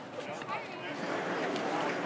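Indistinct talking from people in a crowd, with no single clear voice.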